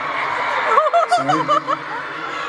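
Laughter in short, quickly wavering bursts about a second in, over the steady noise of an arena crowd.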